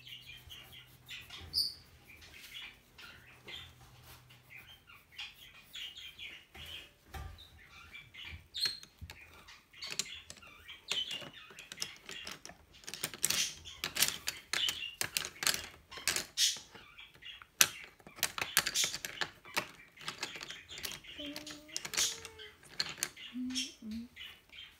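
Colouring pencil scratching on paper in quick back-and-forth strokes as a picture is coloured in, coming in irregular runs that are busiest and loudest in the second half.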